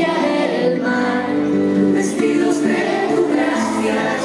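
A group of children singing a hymn together, the voices moving between long held notes.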